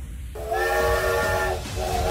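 Steam locomotive whistle blowing a chord of several steady notes over a hiss of steam. The first blast starts about a third of a second in and lasts about a second; a second blast starts just before the end.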